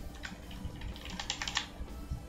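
Computer keyboard keystrokes: a single key press near the start, then a quick run of about eight keystrokes a little past a second in, over a low steady hum.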